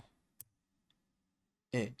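A single sharp computer keyboard keystroke about half a second in, followed by a much fainter tick.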